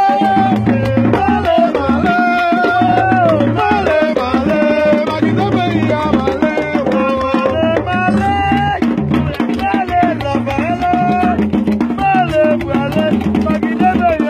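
Live Dominican gagá street music: hand drums beating a steady rhythm while a group sings a wavering melody over them.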